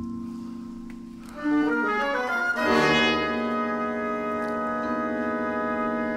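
Symphony orchestra playing. A held note dies away, then about a second and a half in a quick rising run of notes climbs into a loud full chord that is held.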